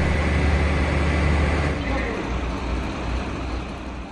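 Steady low engine rumble of a fire truck running at the scene, under a haze of street noise, growing gradually quieter in the second half.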